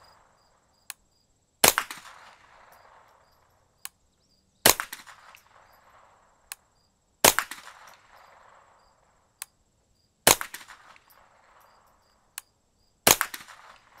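Five suppressed shots from a 10/22 .22 rimfire rifle, fired one at a time about every two and a half to three seconds. Each is a sharp crack followed by a trailing echo, and a faint click comes a little under a second before each shot.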